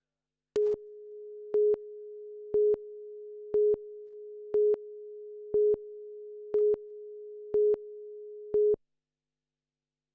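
Countdown leader tone on a broadcast news tape: a steady mid-pitched tone starting about half a second in, with a short, louder beep once every second, nine beeps in all, cutting off about a second before the end.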